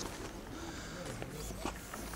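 Footsteps on stone paving as someone walks, with faint low talk in the background.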